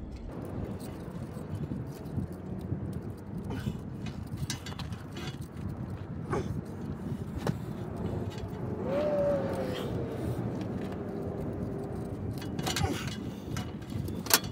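Small hand crimpers being worked on a battery cable lug: a few scattered sharp clicks and metal taps over a steady low rumble, with a faint falling hum about nine seconds in.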